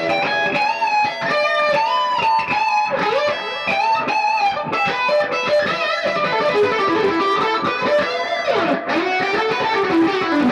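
Gibson Les Paul Studio electric guitar played through a Fulltone OCD overdrive pedal into a Vox AC30 and a Marshall JCM800 at once, playing quick single-note lead lines. Near the end a note slides down in pitch, and a lower note is then held.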